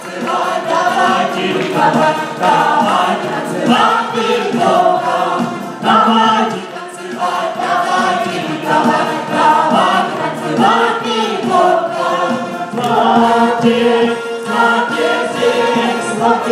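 A group of worshippers singing a lively worship song together.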